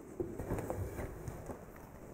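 A few faint taps and clicks of hands working a laptop on a desk, over quiet room tone.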